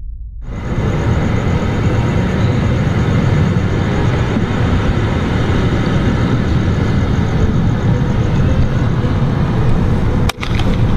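A loud, steady rushing noise with a heavy low rumble, cutting in abruptly about half a second in.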